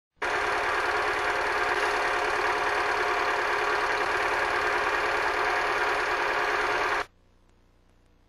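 A steady, dense mechanical clatter that holds unchanged, then cuts off suddenly about seven seconds in.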